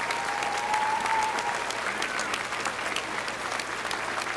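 Large audience applauding steadily, many hands clapping at once, with a thin high tone held for about a second and a half near the start.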